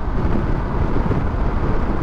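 Wind rushing over the microphone on a motorcycle moving at highway speed: a loud, uneven low rumble of wind buffeting and road noise.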